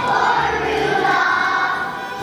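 Kindergarten children's choir singing in unison over a musical accompaniment, with sustained sung notes over a low bass line.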